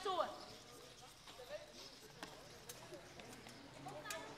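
Voices from a film's soundtrack played back in a lecture room: a short, high, falling exclamation right at the start, then faint scattered voices of people outdoors with a couple of light clicks.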